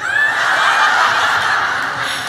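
A large audience laughing together, breaking out all at once and slowly dying down.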